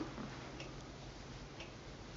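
Quiet room hum with a faint, regular tick about once a second.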